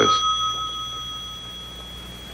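Desk telephone bell ringing out: its ring stops as the receiver is lifted and the tone fades away over about a second and a half, leaving quiet room tone.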